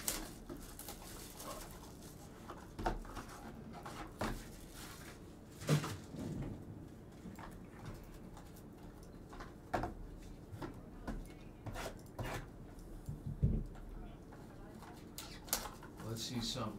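Trading card packs and cards being handled on a tabletop: scattered taps and clicks, about half a dozen spread through the stretch, over a faint steady low background.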